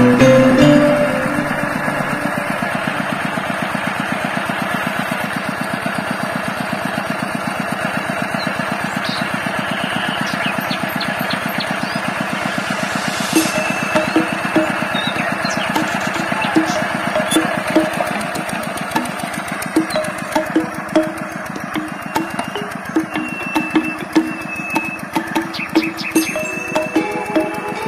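Two-wheel hand tractor's single-cylinder diesel engine running steadily as it drags cage wheels through paddy mud. Background music plays over it, with a light beat in the second half.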